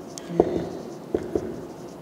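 Marker pen writing on a whiteboard: a series of short strokes and light taps as a few words are written.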